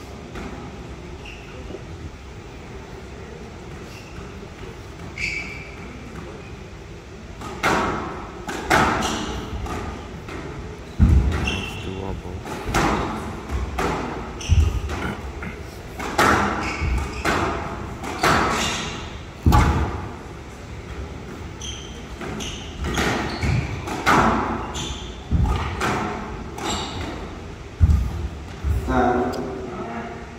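Squash rally on a glass court: after a few seconds of quiet with a couple of shoe squeaks, the ball starts cracking off rackets and walls about once a second, with shoes squeaking on the court floor between hits.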